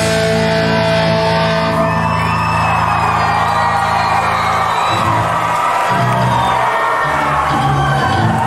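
Punk rock band's last chord ringing out on electric guitar and bass through the PA, with the crowd cheering and whooping over it, on an audience tape recording. Near the end a few short, separate low notes are played.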